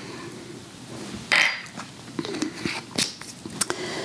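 Light kitchen handling sounds as a measuring cup and a glass vinegar bottle are moved about over a countertop: a brief hiss about a second in, then a few scattered light clicks and taps.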